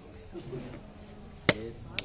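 A single sharp knock about one and a half seconds in, with a second, weaker one at the end, over faint voices in the room.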